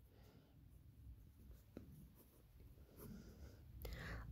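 Faint scratching of a pen writing on notebook paper, with one small click about halfway through.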